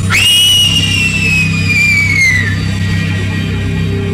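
A girl's high-pitched scream that shoots up in pitch at once, then slides slowly downward and stops about two and a half seconds in, over a low droning music bed.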